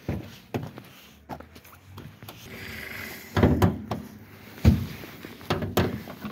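Several clunks and clicks of a 2003 Hyundai Getz being opened up, its door and bonnet latches worked, spread over a few seconds.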